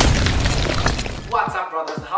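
Intro sound effect of glass shattering: one sharp crash that rings away over about a second. A voice starts speaking about 1.3 seconds in.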